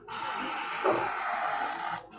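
Steel blade of an Australian leather strander slicing a lace from the edge of a kangaroo hide as it is drawn along: a steady scraping hiss lasting about two seconds.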